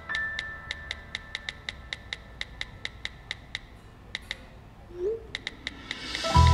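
Smartphone on-screen keyboard clicking as a text message is typed, about three to four key clicks a second, pausing briefly before a last quick run. A short rising blip about five seconds in, as the message is sent.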